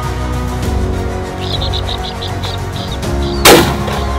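A single shotgun shot at a flushing greywing partridge about three and a half seconds in, loud and sharp with a short echo, preceded by a quick run of high chirping bird calls. Background music plays throughout.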